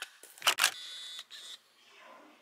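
A camera shutter clicks twice in quick succession, then a brief faint high tone follows.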